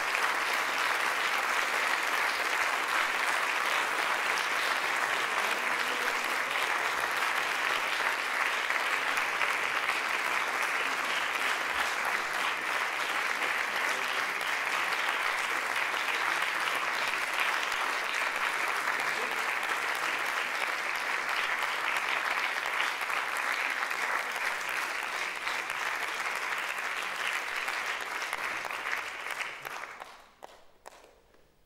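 Concert-hall audience applauding after a performance, a steady sustained clapping that fades away in the last couple of seconds.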